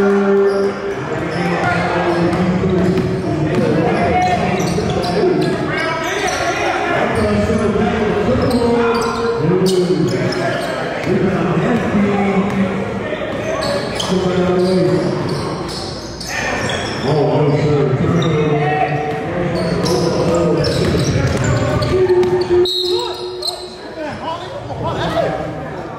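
Basketball being dribbled on a hardwood gym floor, amid players' voices, all echoing in a large gym hall.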